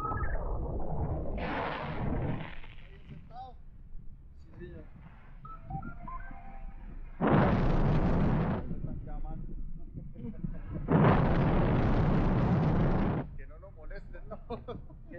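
Wind buffeting the microphone of a camera held out in flight under a tandem paraglider: a low rumble throughout, with two loud rushing gusts, one about seven seconds in lasting a second and a half and one about eleven seconds in lasting two seconds, each starting and stopping abruptly.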